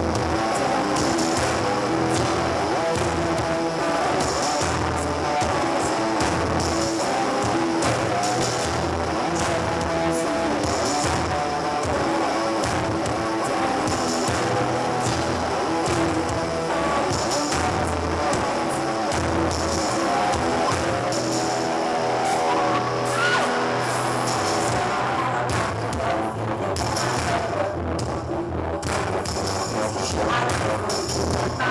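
Live rock band playing, heard from the crowd: an electric bass line and drums carry the music, with a rising glide in pitch about two-thirds of the way through.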